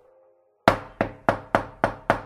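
Knuckles knocking on a door: a quick run of loud, sharp knocks, about three a second, starting a little over half a second in.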